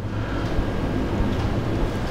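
A steady low hum with an even hiss over it: room tone, with no speech.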